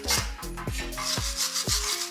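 Background music with a steady beat, over a hand-held brass wire brush scrubbing a welded fence-wire lamp cage, cleaning the welds before painting.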